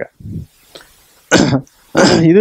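A man coughs once into a headset microphone, a single loud, short cough about a second and a half in, after a faint low throaty sound near the start.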